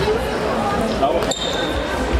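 Ball thuds from a futsal match on a sports hall floor, against chatter from spectators in a reverberant hall. A short, steady, high tone sounds about a second and a half in.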